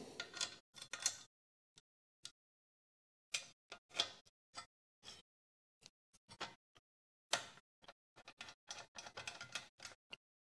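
Faint, irregular metallic clicks and ticks of a screw being worked by hand through a drawer glide into a T-nut in an aluminium extrusion frame, as it is fed in to catch the thread.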